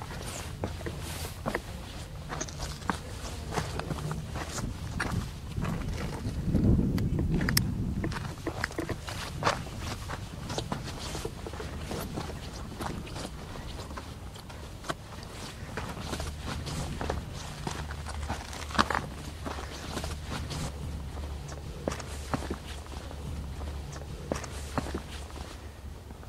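Footsteps crunching irregularly over sand, grit and loose stone chips as someone walks with the camera. About six seconds in, a low gust of wind buffets the microphone for a couple of seconds. This gust is the loudest sound.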